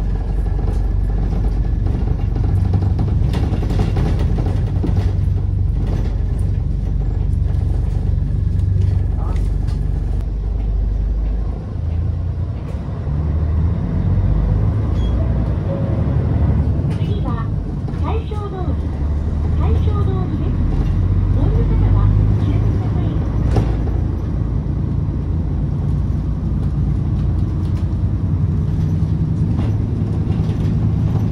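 City bus running along a street, heard from inside the cabin: a steady low engine drone with road noise. A voice is heard briefly in the middle.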